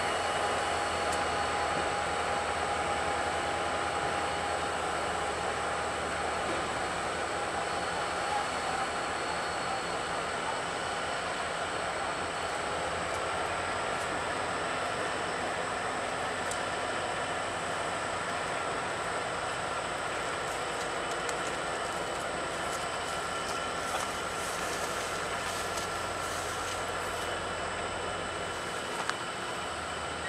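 Norfolk Southern diesel locomotives running steadily as they haul a track geometry train slowly past, with a few light clicks in the second half.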